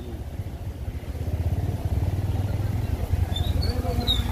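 Motorcycle engine running as it rides up the road, its low rumble growing louder about a second in as it approaches.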